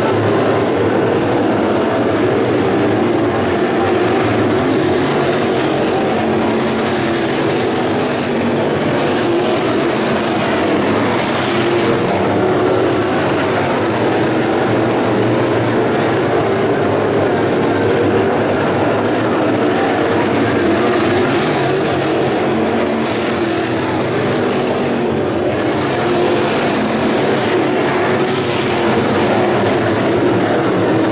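A field of dirt late model race cars with GM 602 crate small-block V8 engines running laps together: a steady, continuous blend of many engines at throttle.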